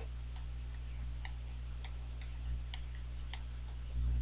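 Faint, irregularly spaced clicks of a stylus tapping a tablet's writing surface as handwriting goes down, about six in all, over a steady low electrical hum.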